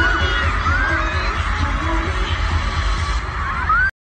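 Live K-pop concert sound: loud music with a heavy, pulsing bass beat and short high screams from the crowd over it. It cuts off abruptly just before the end.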